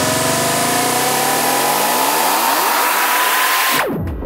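Psytrance build-up: a synth sweep and a cluster of pitched tones rise steadily over a bright noise wash with the bass cut out, ending in a sudden cut and a quick downward pitch dive just before the beat returns.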